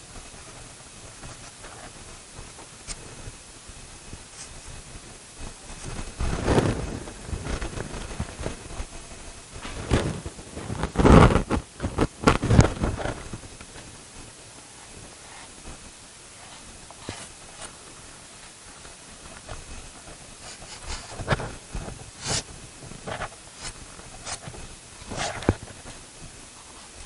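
Pastel stick rubbed and scratched across pastel paper in several short clusters of strokes, over a steady faint hiss.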